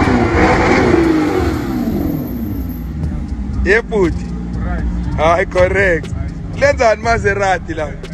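Maserati GranTurismo's V8 engine revving as the car comes up, its note falling away over the first few seconds, then rumbling steadily at low speed. People's voices break in from about the middle of the clip.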